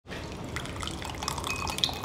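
Thick chicken manchow soup pouring from a takeaway container into a glass bowl: a steady, continuous splashing with many small drips and plops.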